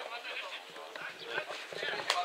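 Distant voices of players and spectators calling out across an outdoor football pitch, with a few short knocks among them.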